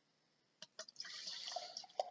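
Wheat beer poured from a glass bottle into a glass tankard, splashing and fizzing as it builds a foamy head. The hiss of the pour starts about a second in, after two light clicks.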